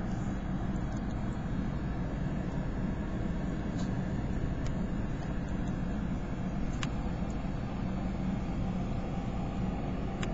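Cats purring right at the microphone: a steady, unbroken low rumble.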